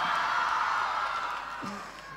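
Large crowd cheering and screaming, fading gradually over the two seconds.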